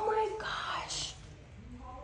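A woman's soft, whispered voice for about the first second, then quiet room tone.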